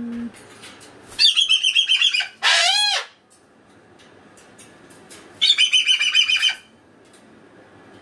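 Moluccan cockatoo calling: a rapid chattering burst about a second in, then a loud arching screech, and a second rapid chatter a little past the middle.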